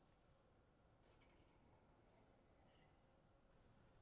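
Near silence, with a few very faint scratchy sounds about a second in.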